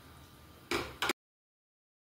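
A brief scrape of a silicone spatula stirring khoa in a stainless steel pan, with a faint tick just after. Then the sound cuts off to dead silence at an edit.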